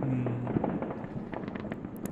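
Fireworks going off in a rapid run of crackles and pops, with a short low hum near the start.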